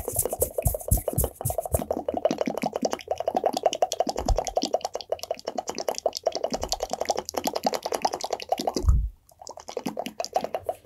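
Rapid wet mouth sounds close to the microphone: a quick, continuous run of small clicks and pops, with a few low thumps and a short break about nine seconds in.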